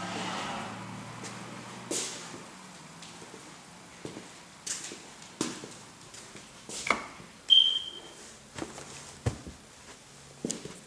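Footsteps walking and then climbing carpeted stairs, with scattered soft knocks and thuds. A low hum dies away in the first two seconds, and a short, high squeak about seven and a half seconds in is the loudest sound.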